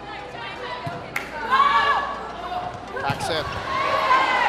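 Volleyball rally in an indoor arena: a sharp ball strike about a second in and more hits around three seconds, with shouted calls from players or the crowd over a steady crowd hubbub.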